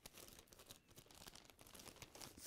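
Faint, irregular crinkling of a thin black plastic bin bag being handled as balls of yarn are pushed into it.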